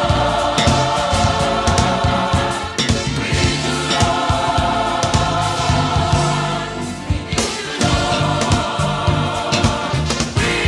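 Recorded gospel song: a high school gospel choir singing long held chords over a drum beat.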